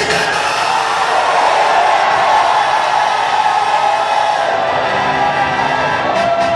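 Loud music with a crowd of worshippers cheering and shouting over it, pitched music lines coming through more clearly near the end.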